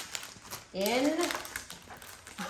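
Rustling and crinkling of a diamond painting canvas and a clear plastic portfolio sleeve as the canvas is slid into the sleeve, in a series of short scratchy rustles.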